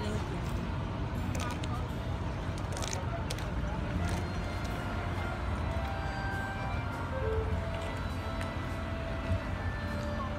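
Soft background music over a steady low rumble.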